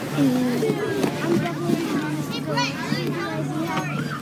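Children's voices chattering and calling out over one another on a bus, with a steady low drone from the bus underneath.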